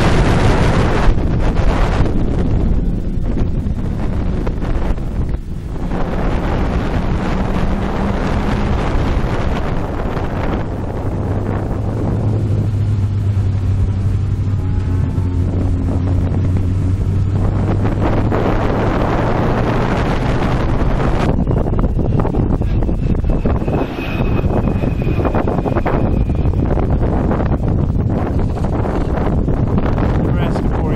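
Fiat 850 Spyder's engine driven hard through an autocross course, heard from the open cockpit under heavy wind noise on the microphone. The engine note climbs over the first several seconds, then settles to a lower, steady note through the middle.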